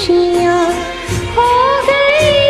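A woman singing a Hindi film song with instrumental accompaniment: a held low note early on, then a wavering melodic line from about the middle onward.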